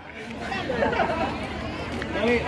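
Indistinct chatter of several people talking at once, starting about half a second in.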